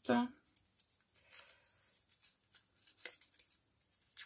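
Faint crinkling of a small crumpled paper slip being unfolded between the fingers, with a few soft crackles about three seconds in.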